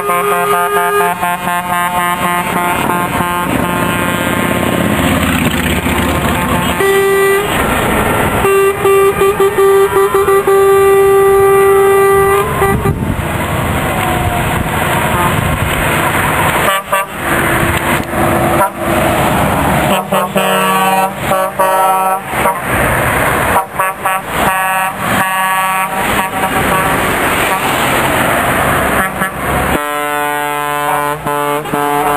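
Lorries in a passing convoy sound their air horns over the noise of their diesel engines and tyres. The horns come in many separate blasts of several pitches, with one long held blast from about seven to twelve seconds in.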